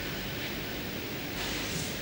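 Steady low hiss of background noise in a hall, with no distinct events.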